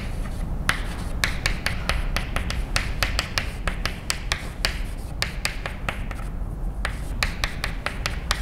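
Chalk writing on a blackboard: many quick sharp taps and short scrapes as each symbol is drawn, with a brief pause about six seconds in. A steady low room hum runs underneath.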